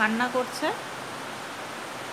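A voice says a few words, then a steady hiss of heavy rain falling outside.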